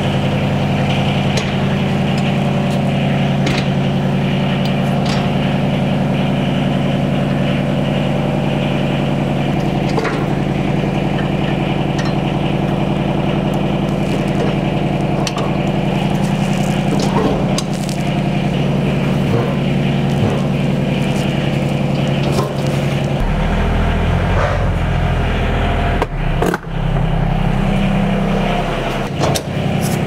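John Deere XUV865R Gator's diesel engine idling steadily, with scattered metal clanks and knocks as the plow mount is handled. The engine note shifts to a deeper tone about two-thirds of the way through.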